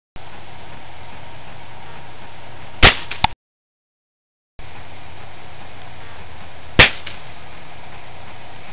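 Remington Vantage 1200 .177 air rifle firing two shots about four seconds apart, each a sharp crack followed by a fainter click, over a steady hiss; the short clips are broken by stretches of dead silence.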